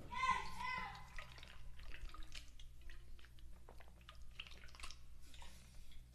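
A short voiced sound in the first second, then faint, scattered small clicks and taps over a low room hum.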